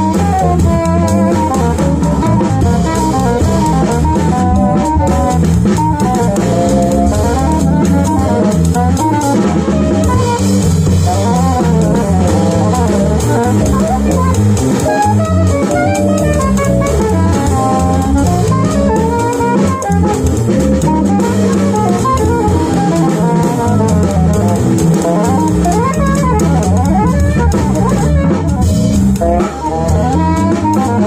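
A live jazz combo playing: a saxophone carries a winding melodic line over electric bass guitar and a drum kit with cymbals.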